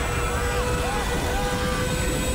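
Passengers screaming inside a plunging airliner cabin over a loud, steady rushing roar with a low rumble underneath and a thin steady whine.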